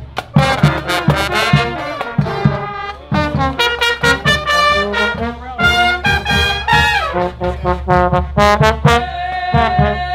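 A small brass band of trumpets and trombones playing an upbeat tune live over a steady beat of sharp hits.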